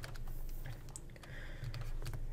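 Faint, scattered light clicks and taps of a stylus on a writing tablet as a hand writes.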